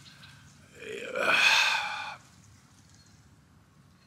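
A rooster crowing once: a single call of about a second and a half, starting about a second in and rising in pitch at its start.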